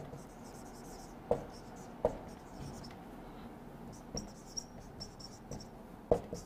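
Marker pen writing on a whiteboard: faint squeaky, scratchy strokes, with a few sharp knocks in the first two seconds.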